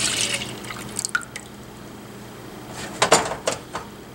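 Milk poured from a glass measuring cup into a saucepan, a splashing stream that trails off into drips in the first half second, followed by a few light clicks. About three seconds in comes a brief, louder clatter, as the glass measuring cups are handled.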